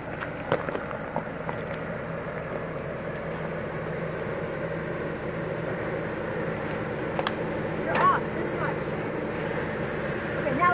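Jeep Wrangler engine running at a low, steady idle as the Jeep crawls slowly forward over a rocky dirt trail, with a few sharp clicks of stones under the tyres. A short pitched sound that rises and falls cuts in about eight seconds in.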